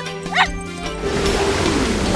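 Background music with steady held tones, and a single short bark from a cartoon dog about half a second in.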